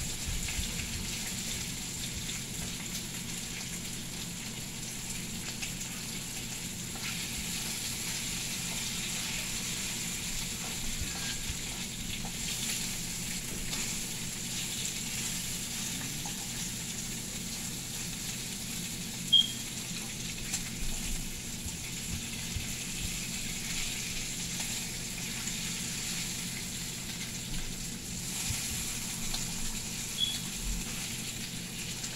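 Bacon sizzling steadily in a frying pan: a continuous hiss with light crackle, and one sharp click about two-thirds of the way through.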